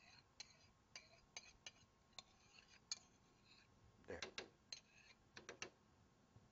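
Near silence broken by faint, irregular clicks of cookware, two or three a second.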